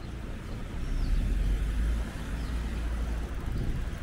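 City street traffic: a low rumble of passing cars, loudest about a second in, with a small bird giving short high chirps about once a second.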